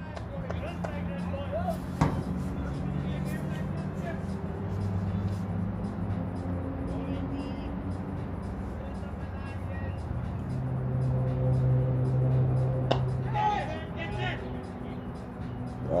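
Outdoor ambience with a low, steady hum that slowly shifts in pitch, faint distant voices, and two sharp knocks, one about two seconds in and one near the end.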